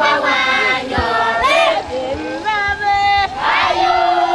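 A crowd singing and shouting together, many voices overlapping in high, held calls.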